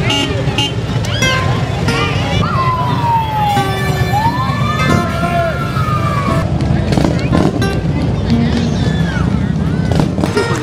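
Police car siren giving one wail that falls, then rises and cuts off, from about two and a half seconds in to about six and a half seconds in, over the low rumble of passing motorcycle engines and crowd voices.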